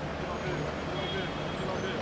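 Indistinct men's voices calling and chatting across an open pitch over a steady low rumble.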